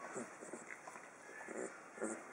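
A 19-day-old vizsla puppy making a few short whimpers and grunts, with the longest one about one and a half seconds in.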